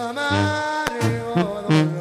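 Sinaloan banda music: a brass band plays a sustained melody over steady, repeating tuba bass notes.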